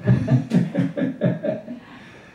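A man's voice through a handheld microphone, chuckling and talking in short broken syllables about three a second, trailing off near the end.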